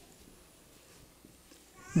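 A pause in a man's speech: quiet room tone in a hall, then his voice starts again right at the end.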